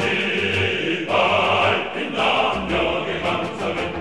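A choir singing a Korean song with instrumental accompaniment.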